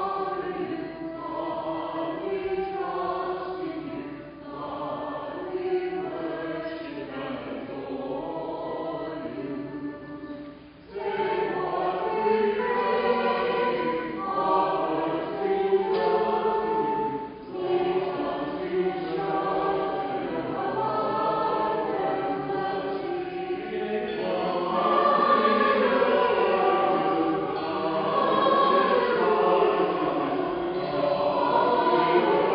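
Church choir singing in harmony, with a brief pause about eleven seconds in before the voices come back in, growing louder near the end.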